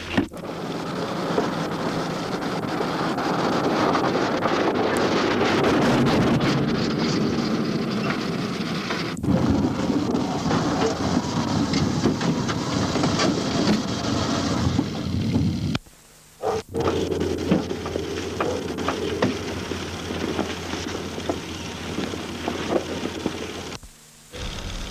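Car driving on a dirt road: a steady rumbling road and engine noise that swells over the first few seconds. It is broken by abrupt edits, dropping out for under a second about sixteen seconds in.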